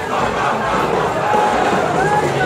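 A crowd of many people shouting and cheering at once, their voices overlapping.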